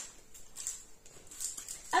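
Faint rustling and a few light taps of cardboard LEGO set boxes and a paper calendar being handled.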